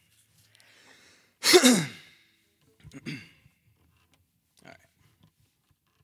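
A man sighing heavily into a close vocal microphone: one long sigh falling in pitch about one and a half seconds in, then a shorter, softer one about a second later.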